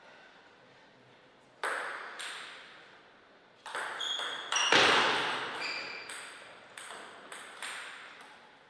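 Table tennis ball clicking off paddles and the table, each hit ringing briefly. Two single clicks come about two seconds in, then a quick rally of about ten hits from a little before halfway to near the end, the loudest just past halfway.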